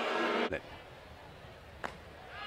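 Broadcast ballpark ambience: crowd noise that drops suddenly to a faint background hum about half a second in, with one sharp click near the end.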